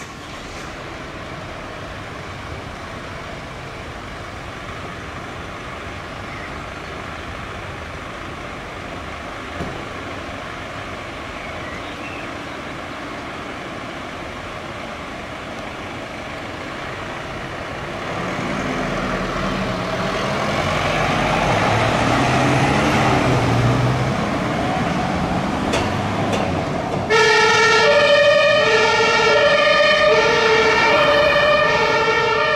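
Mercedes-Benz Sprinter fire command van's engine, running steadily at first and growing louder from about two-thirds of the way in as the van pulls out. Near the end a two-tone emergency siren starts abruptly and alternates regularly between a high and a low note.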